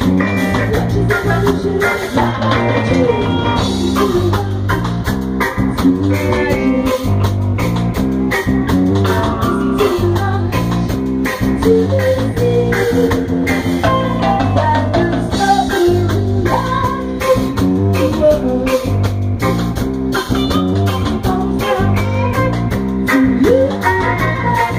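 Live rock band playing loud amplified music: electric guitar, bass guitar and drum kit over a steady drum beat.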